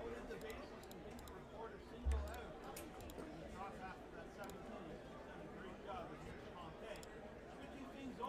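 Faint murmur of spectator chatter from the ballpark stands, with one brief low thump about two seconds in.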